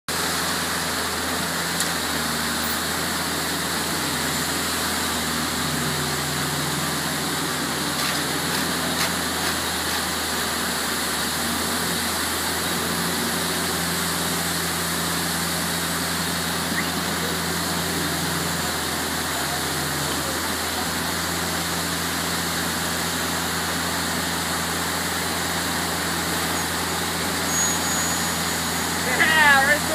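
Heavy construction machinery engines running steadily at a concrete slab pour, their low note stepping up and down several times over a constant noisy drone.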